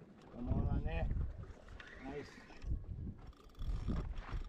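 A man calls out once, a bending drawn-out cry about half a second in, then a shorter call about two seconds later, over a low, uneven rumble of wind on the microphone.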